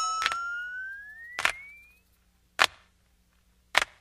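The song's backing music cuts off, leaving a single fading note that glides upward over about two seconds. Four sharp clicks come about once a second.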